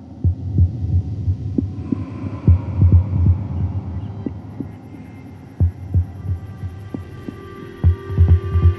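Soundtrack sound design: low, heartbeat-like thumps in irregular clusters over a soft sustained drone. The drone grows fuller about two seconds in.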